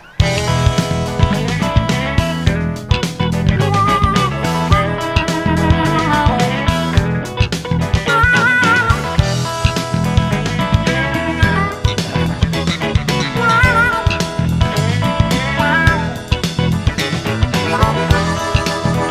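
Electric blues band instrumental break: a lead electric guitar plays bent notes with wide vibrato over a steady bass and drum groove. The band comes back in right at the start after a brief stop.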